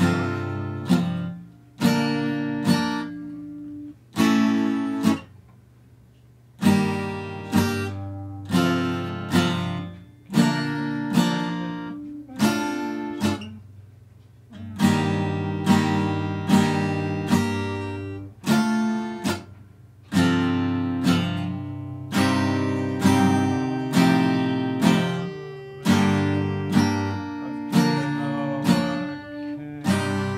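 Acoustic guitar with chords strummed slowly, about one a second, each left to ring and fade before the next. There is a brief lull a few seconds in.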